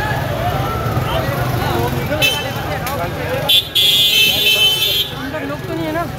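Crowd of people talking over one another, over a low street rumble. A shrill high-pitched blast cuts through briefly about two seconds in, and again for about a second and a half from three and a half seconds in.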